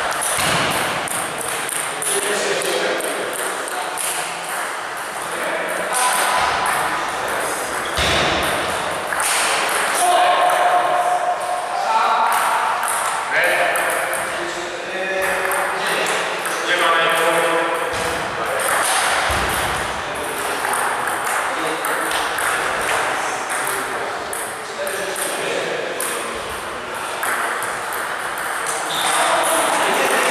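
Table tennis balls clicking sharply off rubber-faced bats and the tabletop during rallies, a quick irregular run of ticks ringing in a large gym hall.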